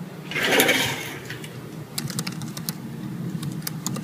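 Typing on a laptop keyboard: irregular quick keystroke clicks that start about two seconds in, after a short breathy burst of noise near the start.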